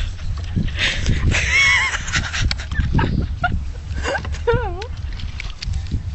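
Short wordless voice sounds that waver in pitch, over a steady low rumble.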